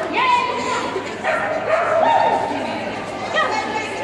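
A dog barking a few times over the chatter of people.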